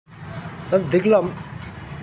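A man's voice says a short word about a second in, over a steady low background rumble.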